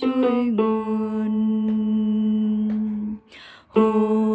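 A single voice singing a harmony line of a Vietnamese hymn: a few quick notes, then one long held note. About three seconds in there is a short break with a breath, and a new note begins near the end.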